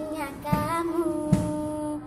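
A young girl singing a dangdut love song, holding long sung notes, with a low thump about once a second underneath.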